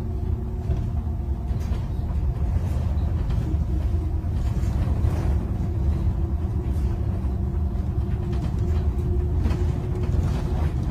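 Cabin noise inside a moving bus: a steady low rumble from the drive and road, with a faint steady hum and a few light rattles.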